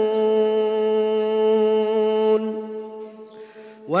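A male Quran reciter holding one long note on the drawn-out final syllable of a verse ('fattaqūn'), steady in pitch, until about two and a half seconds in. The sound then fades to a short quieter pause before his voice rises into the next verse at the very end.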